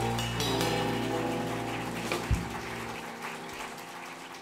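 The last chord of a live jazz piano, double bass and drums ensemble ringing out and fading away, with a single drum thump a little past two seconds in and the low bass note stopping about a second later.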